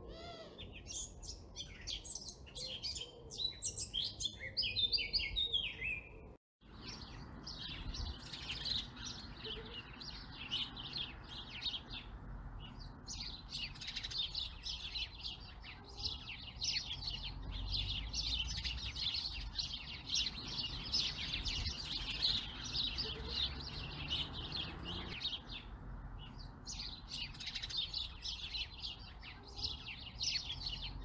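Wild birds chirping and singing: a few distinct falling chirps for the first six seconds, a brief break, then a dense chorus of many birds chirping over each other.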